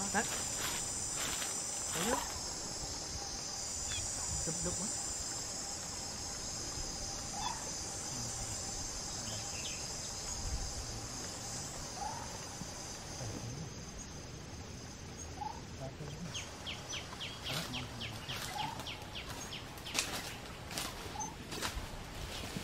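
Steady high-pitched chorus of insects chirring, fading out about two-thirds of the way through, followed near the end by a run of quick, evenly spaced clicks.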